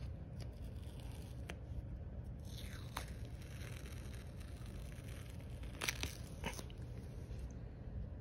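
Adhesive detox foot pad being peeled off the sole of a foot and handled: a few scattered short crackles and crinkles of the pad's backing and sticky edge, the loudest about six seconds in, over a steady low hum.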